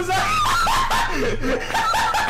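High-pitched laughter that starts suddenly, a quick run of rising-and-falling "ha" sounds repeating several times a second.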